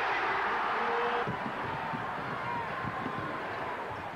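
Basketball arena crowd noise, louder in the first second or so and then settling to a steady din.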